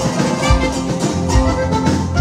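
Live norteño conjunto playing dance music: accordion melody over a steady bass-and-drum beat.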